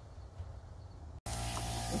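A faint low hum, then, after an abrupt cut a little over a second in, a steady hiss of compressed air from an air blow gun being used to clean around a valve cover.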